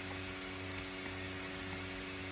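Quiet background music: a sustained chord held steady.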